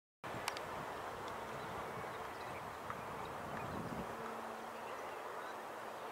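Outdoor background ambience that cuts in abruptly from silence just after the start: a steady hiss with a faint low hum through the middle and a few small clicks.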